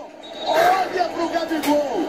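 Speech: a voice talking at moderate level, starting about half a second in after a brief lull.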